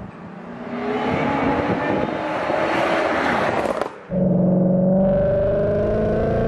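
Supercharged V8 of an 800 bhp Clive Sutton CS800 Mustang, approaching at speed with its engine note rising and growing louder. After an abrupt cut about four seconds in, the exhaust is heard close up from behind the car, loud and holding a steady note.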